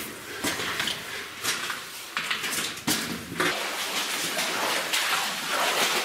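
Footsteps crunching and scuffing on loose rock and rubble, irregular steps with rustling, growing steadier about halfway through.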